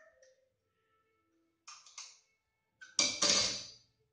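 A metal combination wrench set down on a tile floor: quiet handling of small metal parts, then a sharp metallic clatter with a short ring about three seconds in that fades within a second.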